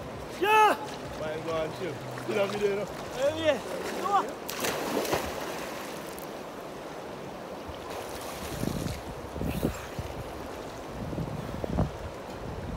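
A man's voice calling out in several short rising-and-falling cries, then a splash about four seconds in as he ducks under the river water, followed by the steady wash of the river at the shore.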